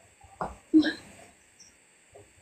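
Two short vocal sounds from a person, a brief one and then a louder one about a third of a second later, with little sound after them.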